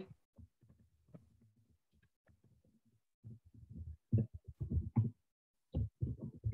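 Computer keyboard being typed on, heard as a quick, irregular run of soft, low key thuds that starts about three seconds in after a nearly silent stretch.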